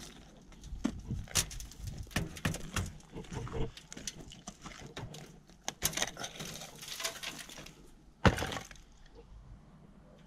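Scattered knocks, clicks and scrapes from handling crumbling brick and mortar and the broken rubble at the wall's foot, with one sharp knock about eight seconds in.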